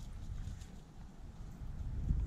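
Wind buffeting an unprotected action-camera microphone: a low, uneven rumble that rises and falls, with faint light rustling over it.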